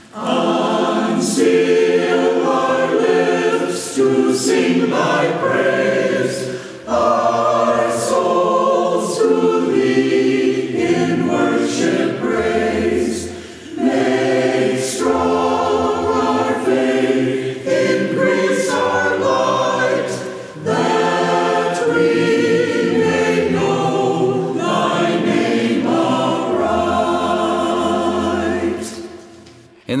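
A choir singing in a series of phrases with short breaks between them, the last phrase dying away near the end.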